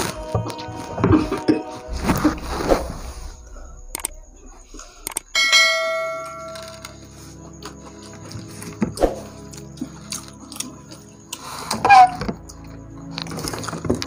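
A subscribe-button sound effect: a bright bell chime about five seconds in that rings and fades over a second or so, then background music. Before it, noisy eating sounds of someone eating noodles with no hands.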